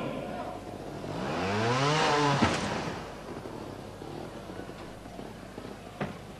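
Two-stroke trials motorcycle engine revving up in a single rising burst, which ends in a sharp knock about two and a half seconds in as the bike hits the obstacle. The engine then runs on more quietly.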